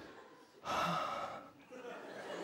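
A man's long, breathy theatrical gasp, close on a headset microphone, starting just over half a second in and lasting about a second.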